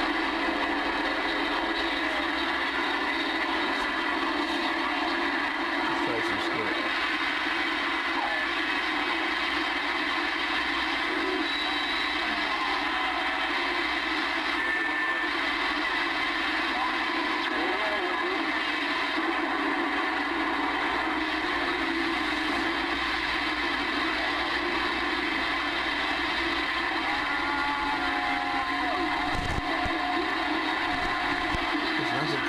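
Galaxy DX-2547 CB base station receiving through its speaker: a steady wash of band static and skip noise with faint, garbled distant voices and steady whistling tones, while the channel knob is turned.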